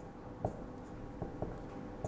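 Marker pen writing on a whiteboard: faint strokes with a few short taps as the tip meets the board.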